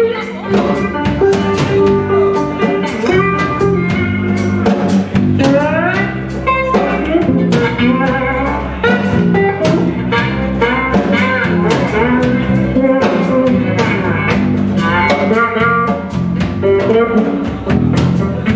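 Live blues band playing: electric guitar over electric bass and a drum kit keeping a steady beat, with the guitar bending notes upward a few times.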